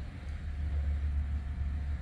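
Steady low rumble with a faint hiss above it, and no speech.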